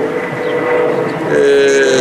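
A man's voice holding a long, hesitant "ehh" in a pause between phrases, steady and then sliding slightly down in pitch over the second half, over steady outdoor background noise.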